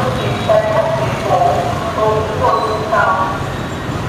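Street traffic with motorbike engines running past under a steady low rumble, and people's voices talking throughout.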